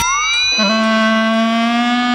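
A dramatic music sting from a TV drama's background score: a tone sweeps upward over the first half second, then a single steady note is held.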